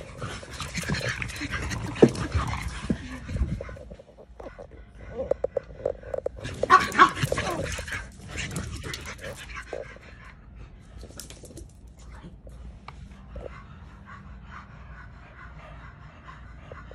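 French bulldogs playing rough: dog vocal noises mixed with scuffling of paws and bodies. It is busiest in the first half, loudest around the middle, and quieter and sparser after that.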